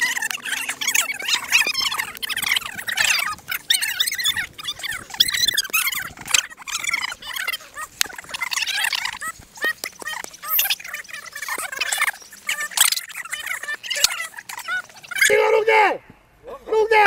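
Several people's voices chattering and shouting excitedly, high-pitched and overlapping, with no clear words.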